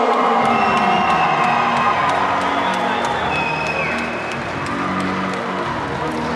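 Crowd cheering over background music.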